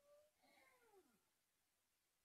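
Near silence with two very faint drawn-out animal calls, each rising then falling in pitch, the second ending about a second in; they have the shape of a cat's meows.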